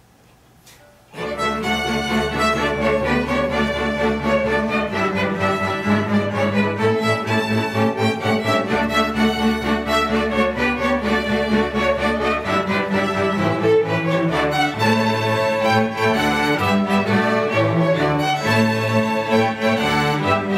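School string orchestra of violins, cellos and double basses starting a piece together about a second in, then playing on with full held chords over a low bass line.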